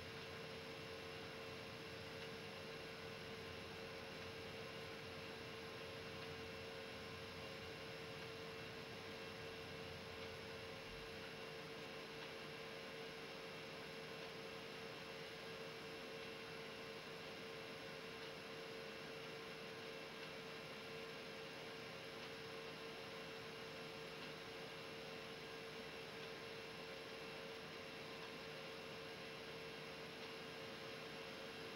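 Faint steady hum with a thin hiss from the silent stretch of a VHS tape playing back: a single unchanging tone over an even background noise, with no music or voice.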